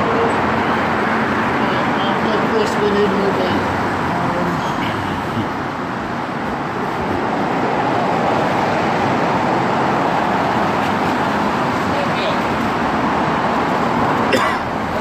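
Steady road traffic on the roadway beside the bridge underpass: a continuous noise of cars and other vehicles passing, with indistinct voices of people nearby.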